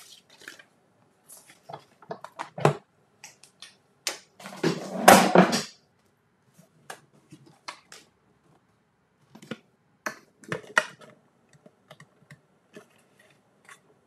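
Cutting plates, a die and cardstock being handled on a Stampin' Cut & Emboss manual die-cutting machine: scattered light clicks and taps, with a louder, longer noisy stretch of about a second around five seconds in.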